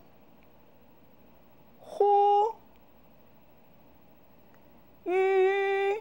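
A voice pronouncing single Mandarin vowel syllables in a tone drill, with pauses between them for repetition. There is a short syllable held at a level pitch about two seconds in, then a longer level-pitch syllable near the end.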